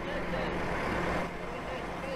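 Heavy truck engine running steadily: a constant low hum under road noise.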